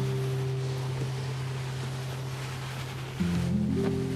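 Background music of soft, sustained low chords, with a new chord coming in about three seconds in.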